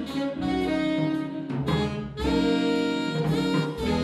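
Live jazz: tenor and alto saxophones playing long held notes together in harmony, moving to new notes every second or two, with a double bass underneath.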